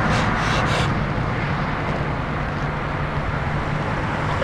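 Steady low rumble, with a few short hissing breaths in the first second from a man straining to bend a steel wrench by hand.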